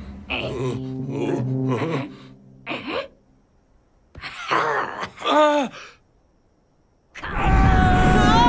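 A cartoon character's strained groans and grunts, one of them falling in pitch about five seconds in. After a second of near silence, a sudden loud burst of sound effects with sustained tones starts about seven seconds in.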